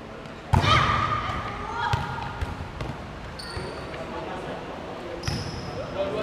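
Volleyball play in a large indoor hall, echoing: a loud hit on the ball about half a second in, then players' shouts and a few more knocks of the ball. Two short, high squeaks of sneakers on the court floor come later.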